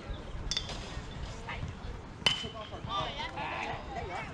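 A metal baseball bat pings sharply as it strikes the ball about two seconds in, the ring lingering briefly. Right after it, spectators shout and cheer.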